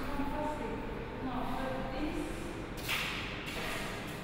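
Faint, indistinct talking in a room, with a short rustling scrape about three seconds in.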